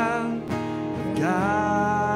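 Live worship music: a strummed acoustic guitar and band with a sung melody; one held sung note ends about half a second in, and a new phrase rises in just past a second in.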